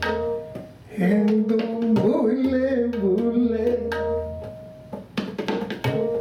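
Sikh kirtan music: tabla strokes over held harmonium notes, with a man's voice singing a wavering phrase from about a second in. The tabla strokes thin out under the voice and pick up again near the end.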